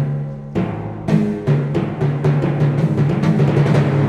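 Live symphony orchestra playing the film score: a few heavy drum strikes over sustained low notes, then strokes coming faster and faster in the second half, building.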